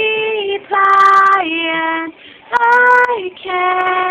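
A young woman singing solo with no audible accompaniment: long held notes that step down in pitch, in four short phrases with brief breaths between them.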